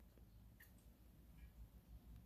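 Near silence: faint room tone, with two soft clicks of lips puffing on a freshly lit cigar.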